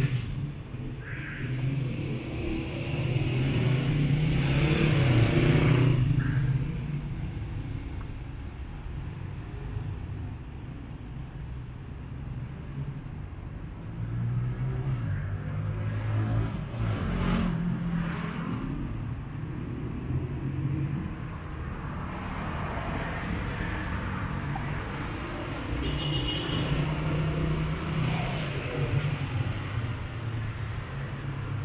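City street traffic: motor vehicles passing with a steady low engine rumble. The loudest pass swells a few seconds in and fades by about six seconds; another goes by a little past halfway.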